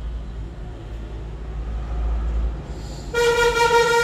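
A low steady rumble, then about three seconds in a horn sounds one loud, steady honk of nearly a second, like a vehicle horn.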